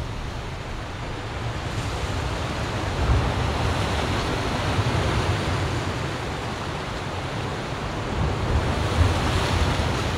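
Ocean surf washing steadily, rising and falling in slow swells.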